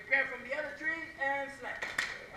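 A voice chanting in a run of short, held pitched notes, with a sharp smack near the end.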